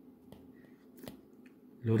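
Faint clicks and taps of a stylus tip on a tablet's glass screen while handwriting, a few soft ticks spread over the first second or so; a man's voice starts near the end.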